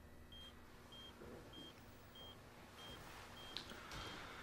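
Hospital patient monitor beeping faintly in time with the heartbeat: short high beeps, about three every two seconds, over a quiet room hum. A faint tap sounds about three and a half seconds in.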